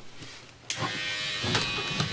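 Handheld electric shaver switched on a little under a second in, then buzzing steadily as it is run over the face.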